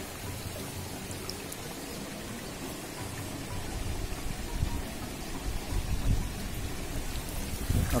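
Shallow muddy water sloshing and splashing as someone wades through it and sweeps a hand push net along the bottom. Dull low thumps of movement come through more in the second half.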